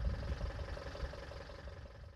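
Bucket truck's engine idling, a steady low rumble that grows fainter toward the end.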